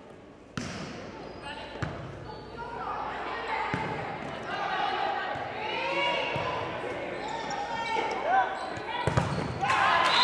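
Volleyball rally in a gymnasium hall. A sharp smack of the ball comes about half a second in, with more hits through the rally, while players' calls and spectators' shouts grow louder. It breaks into loud cheering at the end as the point is won.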